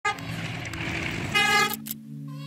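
Horn of a CC201 diesel-electric locomotive sounding as the train approaches: a call at the very start that fades, then a louder, brighter blast about a second and a half in.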